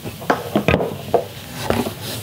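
Unpacking handling noise: a few irregular knocks and rustles as cardboard box flaps are moved and a small electric motor is handled on a wooden workbench, the loudest knock a little under a second in.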